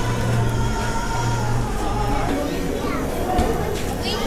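Indoor market hall ambience: a steady low hum with background voices and music playing.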